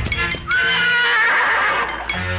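A horse whinnying once: a long, wavering call that starts about half a second in and lasts over a second.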